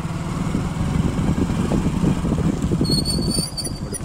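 A motor vehicle's engine running steadily while moving, a continuous low throbbing rumble with road noise. A few short high-pitched tones come in about three seconds in.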